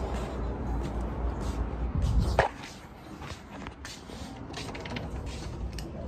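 Low rumble of wind and handling noise on a handheld phone's microphone while walking, ending in a sharp knock about two and a half seconds in. After that it is quieter, with scattered light clicks and taps.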